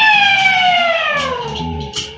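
Live rock band with a loud, sustained electric guitar note that slides smoothly down about an octave over a second and a half, then holds, with the band playing underneath.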